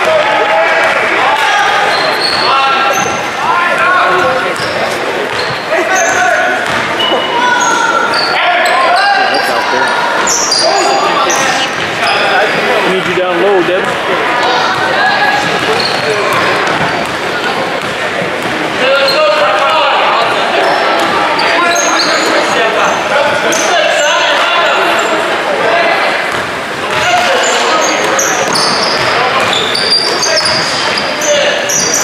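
Basketball bouncing on a hardwood gym floor during play, with overlapping voices of players, coaches and spectators echoing in the large hall.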